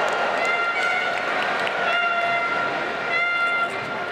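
Stadium crowd noise with a horn sounding long held notes over it, dropping out briefly near the end.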